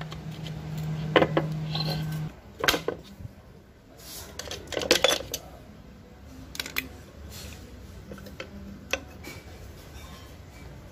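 Flat screwdriver prying the rusted rear brake shoes of a Lambretta scooter up off their pivot posts: scattered sharp metal clicks and clinks as the steel tip levers against the shoes and the cast alloy brake plate.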